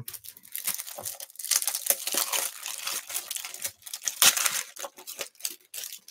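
Hands rummaging through crinkly packaging on a desk: dense rustling and crinkling with small clicks and taps, loudest about two and four seconds in.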